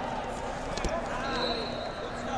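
Echoing hubbub of spectators' voices in a large indoor sports hall, with one sharp thud about a second in and a faint, distant whistle blowing in the second half.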